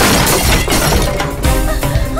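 A glass bottle smashing and shattering at the start, over loud background film music.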